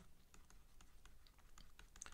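A string of faint, irregular light clicks and taps of a stylus pen on a tablet screen during handwriting.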